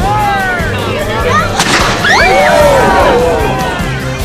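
A small black-powder cannon fires once, about one and a half seconds in, amid shouting voices, over background music.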